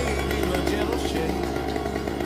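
A small engine running steadily under a country song, with a gap between the sung lines.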